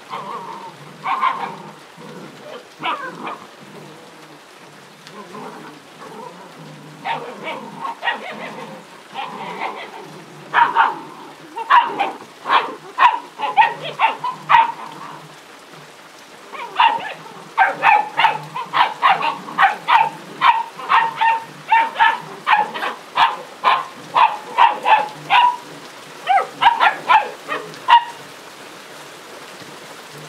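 Puppies barking in short, high yaps while tugging at a cloth toy. The barks come sparsely at first, then in rapid runs of two or three a second from about seven seconds in until near the end, over a steady patter of rain.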